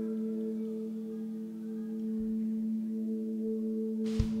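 Sustained ambient pad drone: a steady low note held throughout, with two higher notes pulsing gently above it.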